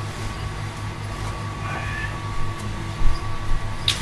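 A steady low hum fills the room, with a couple of knocks about three seconds in and a sharp click near the end as items are moved about while searching.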